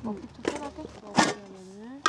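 Women's voices: a short reply, brief talk, and a drawn-out hum. A single sharp clack a little over a second in.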